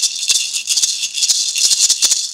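Maracas shaken fast and unevenly by two people, a dense, quick rattle of beads with no steady beat.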